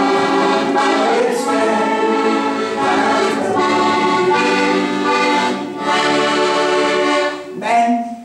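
Accordion playing a gospel chorus tune in sustained chords, the chords changing every second or so and dropping away briefly near the end.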